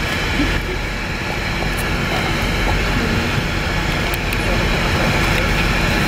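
Steady running noise of a bus, heard from inside the passenger cabin: a constant low hum with an even rushing noise over it and faint voices in the background.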